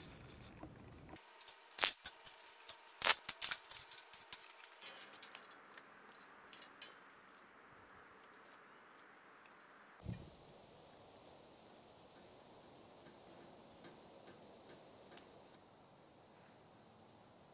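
Scattered sharp clicks and light knocks, loudest and most frequent in the first five seconds, then one dull thump about ten seconds in, over faint background.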